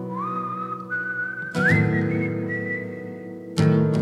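A man whistles a melody over strummed acoustic guitar. The whistle slides up in steps to a long held high note, and chords are struck about one and a half seconds in and again near the end.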